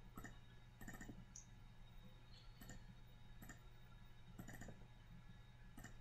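Several faint computer mouse clicks, spaced irregularly, over near silence with a steady low hum.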